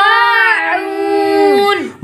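A single voice chanting Quranic recitation, holding one long drawn-out syllable whose pitch rises and then slowly falls, breaking off just before the end.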